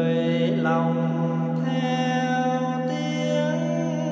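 A single voice chanting Buddhist liturgy in long held notes that change pitch every second or so, over a steady low hum from a large temple bell.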